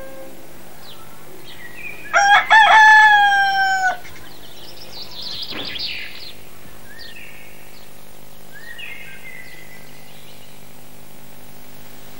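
A rooster crows once, loudly, about two seconds in; the crow lasts about two seconds and sags in pitch at the end. It is followed by a few faint, short chirping and clucking calls from poultry.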